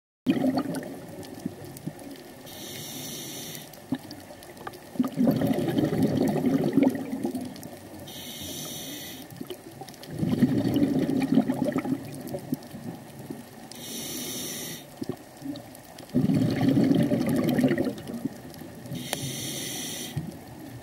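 A scuba diver's regulator underwater, breathing at a steady pace: each cycle is about two seconds of exhaust bubbles rumbling out, then a short high hiss as the next breath is drawn. The cycle repeats four times, roughly every five to six seconds.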